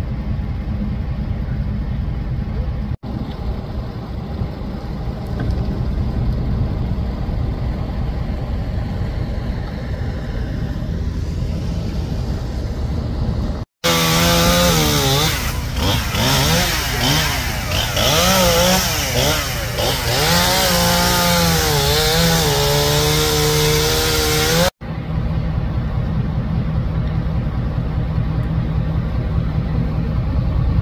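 A chainsaw revving up and down repeatedly as it cuts up a fallen tree, for about ten seconds in the middle, starting and stopping abruptly. It is flanked by a steady low rumble.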